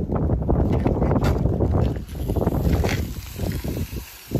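Loud, irregular low rumble of wind buffeting the microphone, easing briefly about two seconds in.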